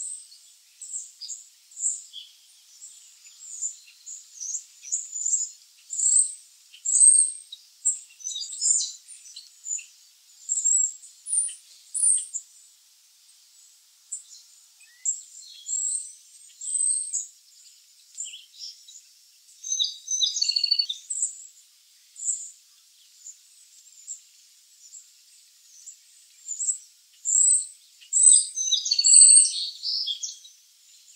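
American robin nestlings begging from the nest, a run of short, thin, high-pitched peeps that come in bunches. They grow denser and louder about twenty seconds in and again near the end.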